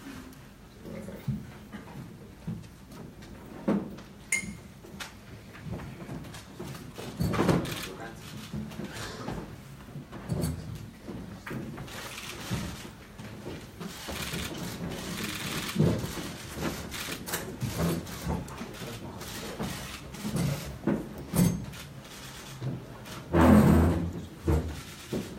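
Indistinct murmur of voices in a room, with scattered knocks and shuffles as people settle at a table, and one loud thump near the end.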